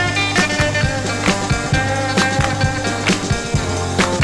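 Instrumental passage of a small band's 1964 pop recording played from a vinyl LP: sustained melody notes over a steady drum beat, with no singing.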